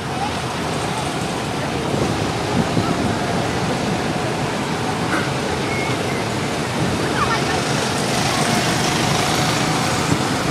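Steady rushing outdoor background noise, with faint voices now and then.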